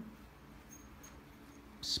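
Quiet room with a steady low hum and a few faint, soft ticks as a dog turns in a spin on the carpet.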